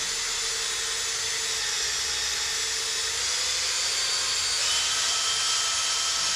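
Cordless drill running steadily, spinning an aluminium reel-stripper cone that winds fishing line off a big-game reel: a continuous motor whine with line hiss. Its tone changes and it gets slightly louder about five seconds in.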